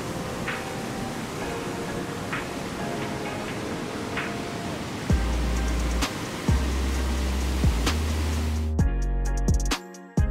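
Background music over the steady rush of a waterfall. About halfway through, a heavy bass line and beat come in, and near the end the water noise cuts off, leaving only the music with sharp beats.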